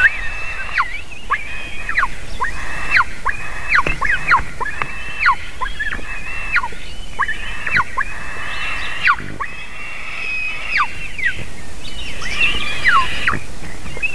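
White-tailed eaglets begging at a feeding: a steady stream of shrill whistled calls, each held high and then dropping sharply in pitch, about one or two a second.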